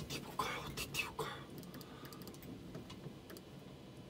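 Soft whispering and rustling in the first second and a half, then light computer keyboard and mouse clicks at a desk.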